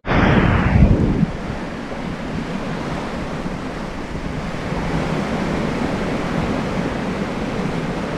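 Bow wave of a ship rushing and splashing as the hull cuts through the sea, with wind on the microphone. A louder, brighter surge in the first second dulls and settles into a steady rush.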